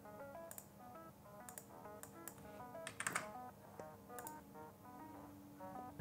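Quiet background music, a light melody of short notes, with a few sharp clicks of a computer mouse scattered through it.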